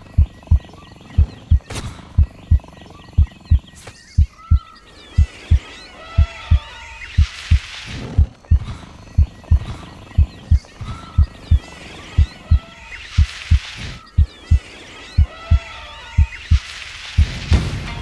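Intro soundtrack of low double thumps like a heartbeat, about once a second, under jungle-style bird and animal calls with swelling rushes of noise; it grows fuller near the end as the song begins.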